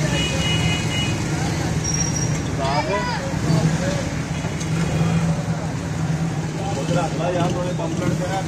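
Steady low hum of busy street noise, with voices talking briefly in the background.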